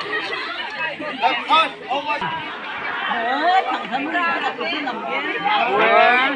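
Crowd chatter: many voices talking and calling out at once, overlapping, with a burst of louder voices near the end.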